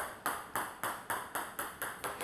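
A celluloid/plastic table tennis ball bouncing in a quick run of light bounces, about four a second, after a backspin serve.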